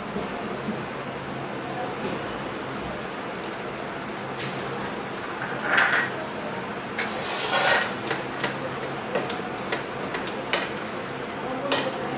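Cooking pan of spinach and green chillies in hot water, with a steady hiss under it. Garlic cloves are dropped onto the leaves near the middle, followed by a rustle and a few light clicks and knocks of utensils against the pan.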